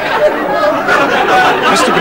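A man's agitated outburst of speech, with other voices overlapping it.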